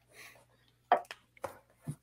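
A few short, sharp clicks and taps, about four in the second half, with a fainter rustle just after the start.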